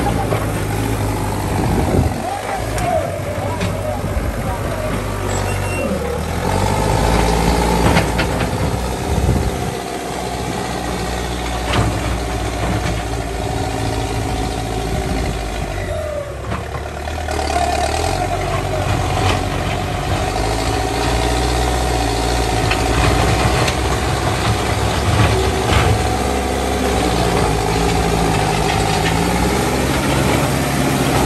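Backhoe loader's diesel engine running and working, its revs stepping up and down as the front bucket pushes and spreads gravel on a dirt road, with scattered short knocks.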